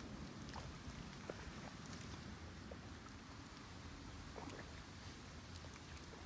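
Faint, sparse wet sounds of a hoe working mud and water at the edge of a flooded rice paddy while plastering the levee, with a few light ticks over low outdoor noise.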